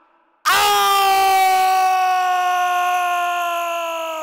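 A man's long, loud scream of pain in a staged stabbing, a knife held to his chest. It begins about half a second in and is held for over three seconds on one note that sinks slowly in pitch, fading near the end.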